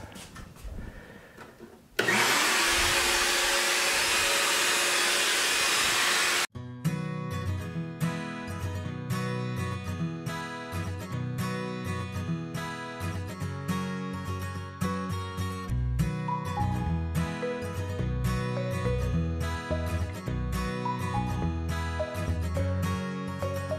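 A power tool runs loud and steady from about two seconds in, then cuts off abruptly a few seconds later. Background music with a steady beat takes over for the rest.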